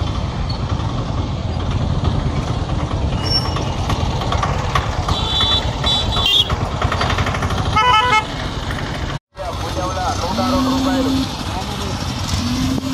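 Steady rumble of motor vehicles with wind on the microphone, broken by vehicle horns. A few short toots come about five to six seconds in, then a rapidly pulsing horn about eight seconds in. After a brief cut near the end, people's voices.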